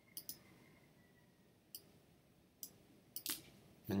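Sharp, separate clicks of a computer mouse or keyboard while a web page is opened: a quick pair about a fifth of a second in, single clicks near two seconds and near three, and a louder pair just after three seconds.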